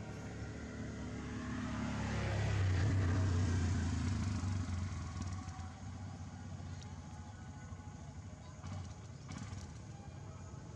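A motor vehicle passing by: its engine sound grows over the first few seconds, is loudest about three seconds in with a falling pitch, then fades away.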